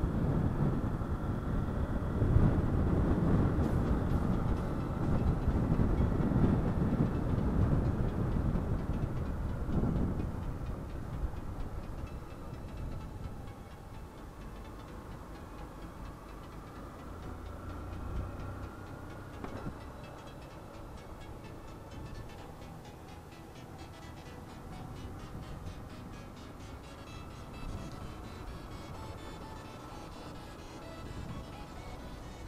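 Motorcycle on the move, heard through the rider's camera microphone: engine running with wind and road rush, loud for about the first ten seconds and then quieter. A faint rising whine comes a little past halfway.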